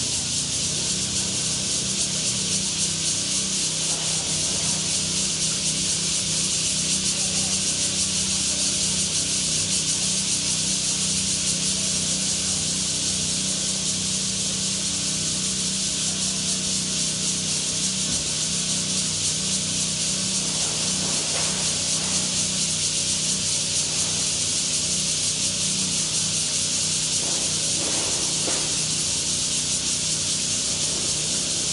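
Steady, high-pitched chorus of cicadas in the surrounding trees, with a low steady hum underneath.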